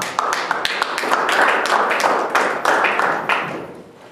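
Audience applauding: scattered claps swelling quickly into full applause, then thinning out near the end.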